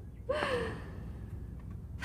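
A short, breathy gasp from a person, about a third of a second in, with its pitch rising briefly and then falling.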